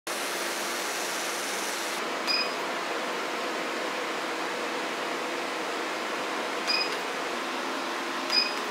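Steady fan hiss of a salon light-based hair-removal machine, with two short electronic beeps, a little over two seconds in and again near the end, as the handpiece is applied to the skin.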